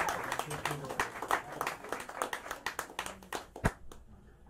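Small club audience applauding, the clapping thinning out and dying away, with a last louder sharp clap or knock near the end and a few voices among it.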